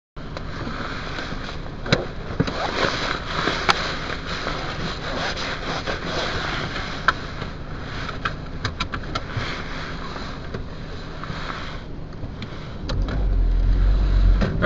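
Inside a Volkswagen Jetta's cabin, the engine runs with a steady low hum under a noisy haze. Scattered clicks and knocks come through, and a deeper rumble rises near the end.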